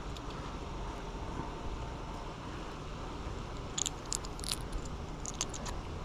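Small clicks and taps of a hook and line being worked out of a small sheepshead's mouth by hand, bunched together about four to five and a half seconds in, over a steady low rumble of wind on the microphone.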